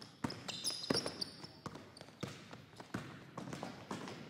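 Basketball dribbled hard on a hardwood gym floor: irregular bounces and footfalls. Sneakers squeak sharply from about half a second to a second in as the players drive to the basket.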